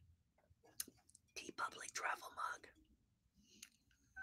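A man whispering or murmuring softly for about a second in the middle, after a small click; the rest is quiet room tone.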